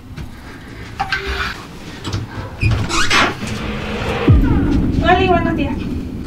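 Handling and movement noises in a small room: clicks, knocks and rustling as a person moves to a door and opens it, with a short vocal sound about five seconds in.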